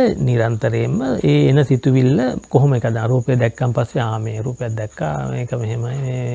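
A man talking without a break in a sermon-style monologue in Sinhala, close to a clip-on microphone.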